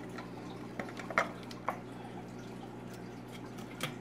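Wet apple pulp (pomace) being scraped with a spatula out of a plastic food-processor bowl into a plastic bucket: a few soft wet plops and taps, over a steady low hum.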